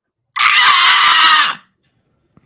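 A man's loud, high-pitched vocal screech imitating a bat, held for just over a second and dropping in pitch as it ends.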